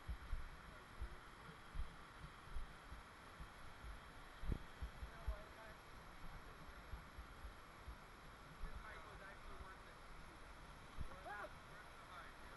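Footsteps through dry fallen leaves, heard as irregular low thuds, over the steady rush of a nearby creek; a faint voice is heard briefly near the end.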